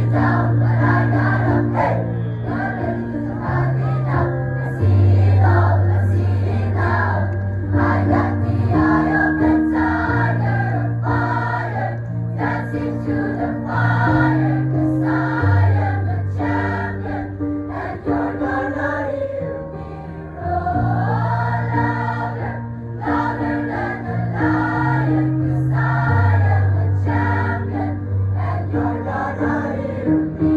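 Large mixed choir of female and male voices singing in parts, with low sustained bass notes that change pitch every second or two under moving melodic lines.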